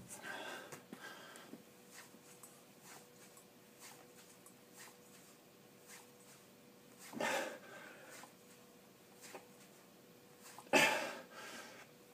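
A man breathing hard through a heavy set of single-arm 40 kg kettlebell rows, with forceful exhales at the start, about seven seconds in, and loudest near the end. Faint ticks come between the breaths, over a steady faint hum.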